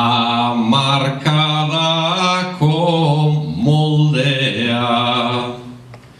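A man singing an improvised Basque verse (bertso) solo and unaccompanied, in long held notes phrase by phrase; his line ends shortly before the end.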